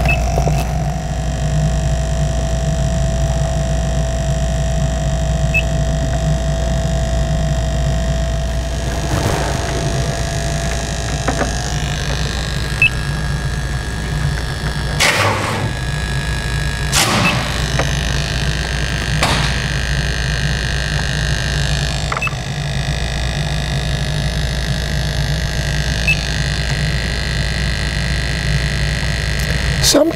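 Steady low hum of the BULLSEYE CO2 leak detector's sampling pump drawing air in through its probe, with a thin steady tone that fades out about eleven seconds in. A few light knocks come in the middle stretch.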